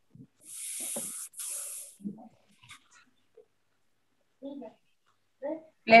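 Two short bursts of hiss, one right after the other, each under a second long, followed by a few faint scattered sounds.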